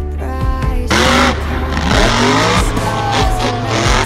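Backing music with a monster truck engine revving mixed in, the revs rising and falling and loudest between about one and three seconds in.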